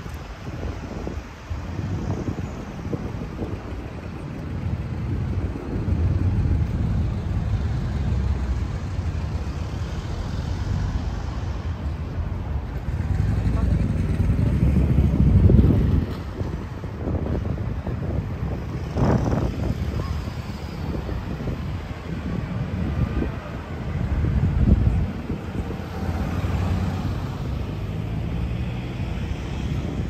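Cars passing on a city street, one growing louder to a peak about halfway through, with people talking in the background.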